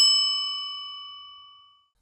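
A single bright, bell-like metallic ding, a transition sound effect, struck once and ringing out as it fades away over nearly two seconds.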